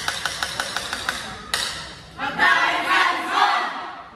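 A fast, even run of sharp beats, about six a second, then a sudden loud group shout of many young voices in the second half, like a cheer or battle cry.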